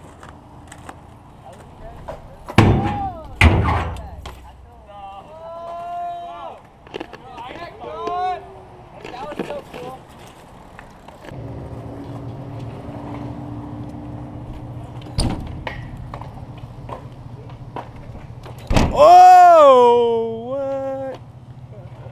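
BMX bike on a concrete skatepark with two hard knocks a few seconds in, and riders calling out in short whoops. Near the end comes a loud, drawn-out shout, and a steady low hum runs through the second half.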